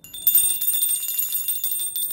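Small brass bells shaken, ringing with rapid repeated clapper strikes over a sustained high ring that starts suddenly.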